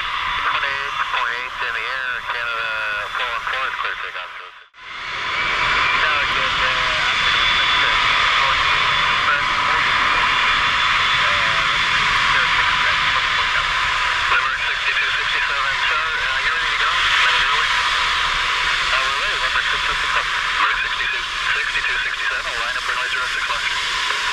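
Airbus A380-861's Engine Alliance GP7200-series turbofans at taxi power: a loud, steady hiss with faint radio chatter underneath. The sound cuts out briefly about four and a half seconds in.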